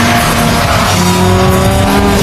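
Muscle car launching with its engine revving hard and the rear tyres spinning and squealing, mixed under loud film music.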